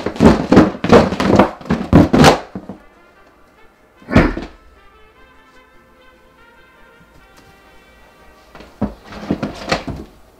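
A towel-wrapped cardboard box with DVD cases inside, shaken hard and knocked against a wall, making repeated thunks about three times a second for the first two seconds. About four seconds in there is one heavier thump. After that, faint background music plays, with a few light knocks near the end.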